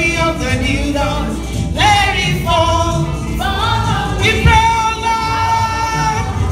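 Live gospel music: singing with a choir over steady backing, a voice sliding up about two seconds in and a long held note near the end.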